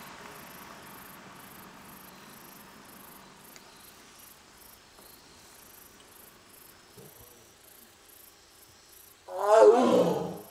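Korean (Amur) tiger giving one loud, wavering call near the end, lasting about a second. Before it, only faint insects chirping in a steady rhythm.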